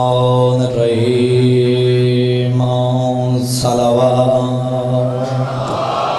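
A man chanting a drawn-out melodic recitation in long, steady held notes, with brief breaks about one and three and a half seconds in; the voice stops near the end.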